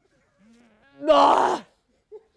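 A woman gagging: a short faint hum, then one loud, strained retching heave lasting about half a second, a gag reflex from eating sürströmming.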